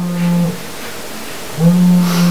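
A man's drawn-out 'euh' hesitation sound, held on one steady pitch: about half a second at the start, then again from about a second and a half in, with a short quiet gap between.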